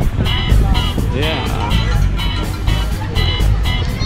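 Loud music with a steady beat and heavy bass, with a voice heard over it about a second in.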